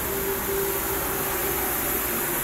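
Steady background machinery drone: an even hiss with a faint steady hum, unchanging throughout.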